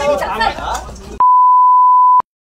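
A steady high-pitched single-tone beep, about a second long, starting about a second in right after agitated voices and cutting off sharply into dead silence: an editor's censor bleep laid over abusive words.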